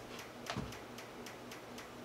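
Faint, steady, rapid ticking at about four to five ticks a second, with a soft thump about half a second in.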